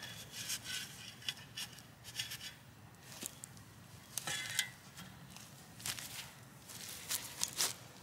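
Irregular short scrapes and rustles of soil and dry grass being pressed down and shuffled around the base of a freshly planted bush.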